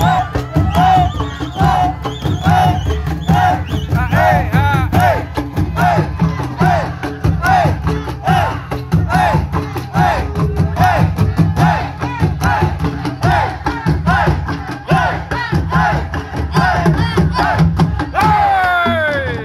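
An ensemble of large bedug barrel drums beaten with wooden sticks in a fast, dense rhythm. A higher part of short rising-and-falling notes repeats about twice a second over the drumming.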